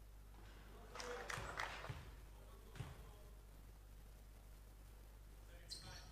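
Quiet indoor sports-hall ambience during a basketball free throw, with a few faint knocks and thuds in the first three seconds.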